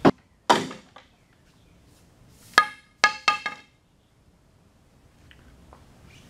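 Metal gas filler neck tube of a 1935 Ford being knocked against a homemade dent-pushing tool to force out a dent in its curve. Two sharp knocks come first, then three or four more about two and a half seconds in. The later knocks ring with a metallic tone.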